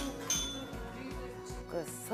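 Background music with a steady beat, and a brief high-pitched clink about a quarter second in; a voice begins speaking near the end.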